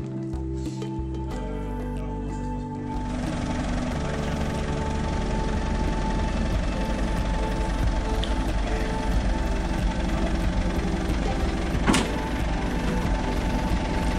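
Background music with held chords, joined about three seconds in by the steady running of a telehandler's diesel engine as it lifts a heavy load. A single sharp knock comes about twelve seconds in.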